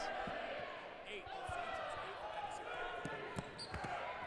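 Dodgeballs bouncing and striking on a hardwood gym floor: a scattering of separate knocks at irregular intervals under the faint hubbub of players across the court.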